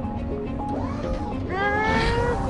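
Background score music with held notes. About one and a half seconds in, a pitched sound enters and glides upward.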